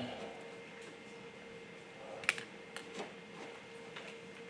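A few light clicks and knocks from hands working with knives and ingredients on a table, about two seconds in and twice more shortly after, over a faint steady hum.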